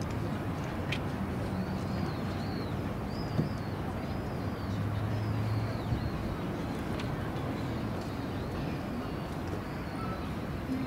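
Open-air athletics track ambience: a steady murmur of distant voices over background noise, with repeated high chirps and a few faint sharp clicks, as runners settle into their starting blocks.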